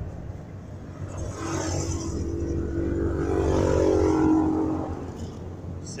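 A motor vehicle driving past: an engine drone that swells to its loudest about four seconds in and then fades, over a steady low rumble.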